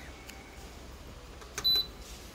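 Air fryer oven's control panel giving one short, high electronic beep near the end as the Air Fry button is pressed and the display comes on. Before it there is only a faint low hum.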